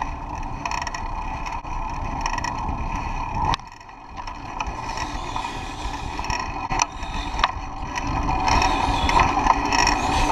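A squeaky pedal on a fixed-gear bicycle squeaks over and over as it is ridden, over a rumble of road and wind. The squeaking drops off briefly a few seconds in, then comes back and builds, with a few sharp clicks in the second half.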